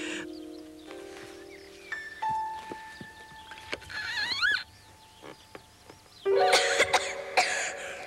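Soft background music with held notes, then a cartoon kitten coughing loudly near the end, choking on chimney smoke.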